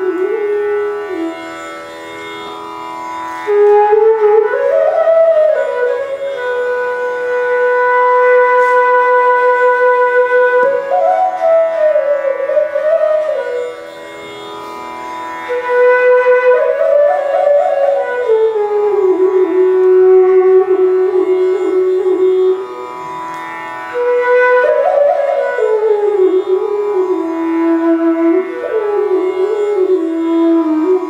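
Bansuri (Indian bamboo flute) playing a slow, unaccompanied alap in raga Mishra Khamaj: long held notes joined by slides and short ornamented turns, in phrases separated by brief breathing pauses, over a steady drone.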